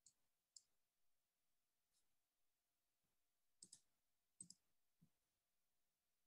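Near silence with a few faint, brief computer-mouse clicks scattered through, two of them quick double clicks past the middle.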